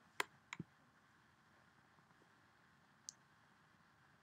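A few sharp clicks from a computer being worked, in near silence. There is one loud click just after the start, a quick pair about half a second in, and a single fainter click about three seconds in.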